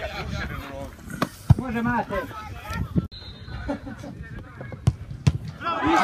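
Football players shouting and calling across the pitch, with several sharp thuds of the ball being kicked.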